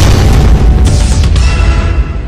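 Loud cinematic boom from a logo sting: a deep, sustained rumble with a hissing swell about a second in, starting to fade near the end.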